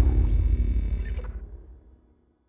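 Tail of a logo-animation sound effect: a deep rumble dying away after a booming hit, its high end cutting off just over a second in and the rest fading out near the end.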